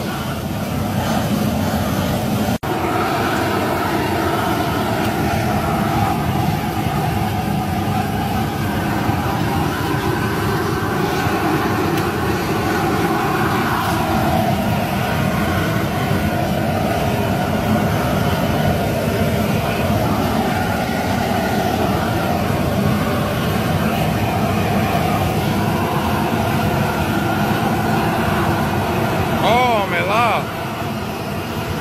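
Steady roar of a propane burner under a large crawfish boil pot at a rolling boil, with a brief break about two and a half seconds in.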